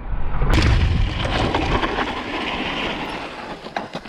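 Mountain bike rolling fast over a rough, stony dirt trail: tyres crunching on gravel, the bike rattling, and wind rumbling on the handlebar camera's microphone. It gets louder about half a second in and eases off over the last couple of seconds as the bike slows.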